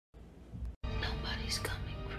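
A brief whispered voice over a low, sustained dramatic music score, coming in after a short cut a little under a second in.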